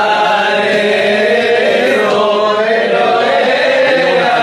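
A group of men singing a chant together in unison, one steady melodic line that carries on without a break.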